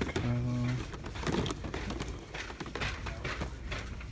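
A short, low, steady hum from a man's voice lasting about half a second near the start, followed by light clicks and rustles of cardboard toy boxes being handled on the shelf.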